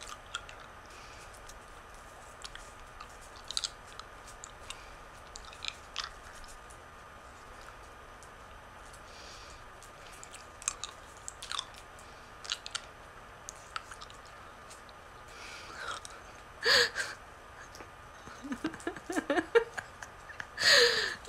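Quiet chewing of a hard cough drop: sparse small crunches and mouth clicks over a faint room hiss. A louder short noise comes about 17 seconds in, and brief laughter starts near the end.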